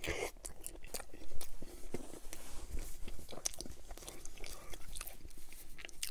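A person bites into a chili dog in a soft bun and chews it close to the microphone: a bite right at the start, then many small wet mouth clicks.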